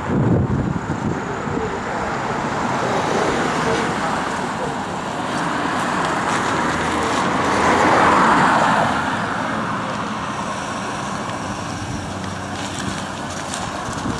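Road traffic noise: cars running and passing on a busy street, with one vehicle passing close and loudest about eight seconds in.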